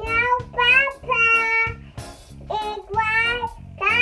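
A toddler girl singing in a high voice, in short held phrases with a pause about halfway, over a background music track.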